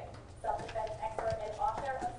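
A voice speaking indistinctly from a video played over the room's sound system. A brief lull comes first, then the speech picks up about half a second in.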